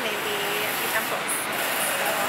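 Steady background noise with a soft, wordless vocal sound from a woman in the first half-second.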